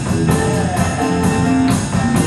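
A jazz band of saxophones, guitars and double bass playing with drums, on a steady beat of roughly two strokes a second under held horn notes.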